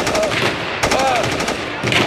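Rapid machine-gun fire in short bursts, about fifteen shots a second: a staged gunfire sound effect for a mock shooting. Short cries of 'oh' come between the bursts.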